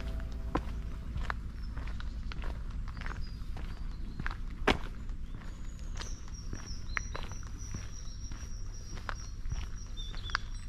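Footsteps on a gravel towpath at a steady walking pace, with one sharper click about halfway. A faint, thin, high steady note joins a little after halfway and carries on.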